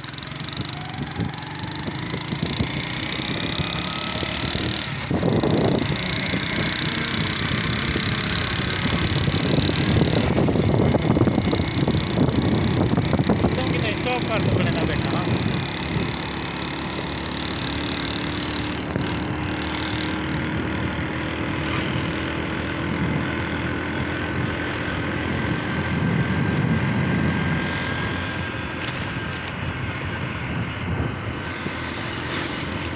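The engine of a moving road vehicle running steadily while driving along a road, with continuous road noise; its pitch glides up near the start and later holds steady.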